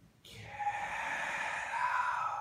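A man's long, breathy vocal exclamation of amazement, drawn out for about two seconds between the words of "get out".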